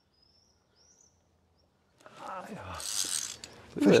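A few faint bird chirps over near silence, then about halfway through a sudden stretch of rustling and sharp clicking: a climber moving over rock with via ferrata gear, and the camera being handled.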